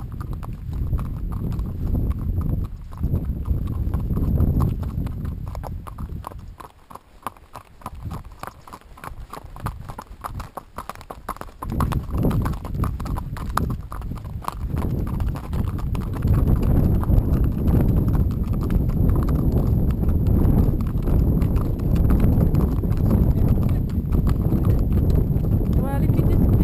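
Horses' hooves clip-clopping on a gravel track in a steady run of hoofbeats, over a low rumble that grows heavier in the second half.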